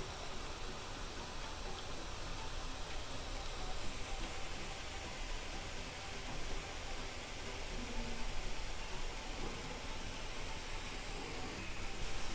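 Faint, steady sizzle of boondi (gram-flour batter drops) frying in hot oil.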